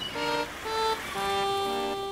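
Outro music: a short melody of separate pitched notes, each lasting a quarter to half a second, ending on a long held note.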